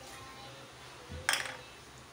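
A single short metallic clink of a cooking utensil against the pan, a little over a second in, over a faint background.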